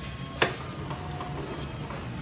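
A single short, sharp click about half a second in, over faint steady background noise.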